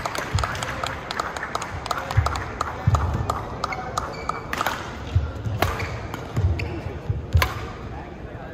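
Badminton rally: sharp cracks of rackets hitting the shuttlecock, the loudest about halfway through and near the end, over repeated dull thuds of footwork and short shoe squeaks on the court mat, in a large echoing hall.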